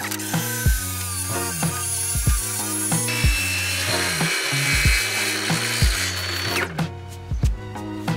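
A cordless driver running, then a DeWalt circular saw cutting along a plywood edge from about three seconds in, stopping shortly before the end. Background music with a steady beat plays throughout.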